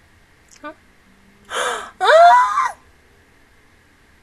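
A woman's sharp gasp followed at once by a short vocal cry with a wavering pitch, a startled reaction; the cry is the louder of the two.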